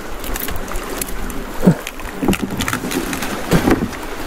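Small boat on a fast-flowing river while a nylon gill net is pulled in by hand: a steady rush of water with many small sharp clicks, and a few short dull knocks in the second half.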